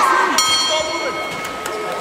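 Boxing ring bell struck once about half a second in, ringing on and slowly fading, marking the end of the round.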